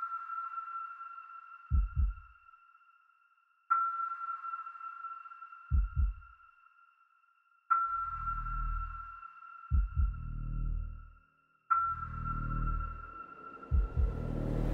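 Suspense soundtrack: a high sonar-like ping sounds every four seconds and fades away each time. Under it come low double thumps, which give way to longer low swells in the second half.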